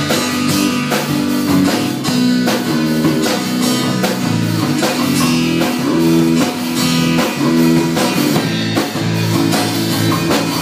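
A live band plays an instrumental passage with no singing: strummed acoustic guitar, electric bass and drum kit keeping a steady rock beat.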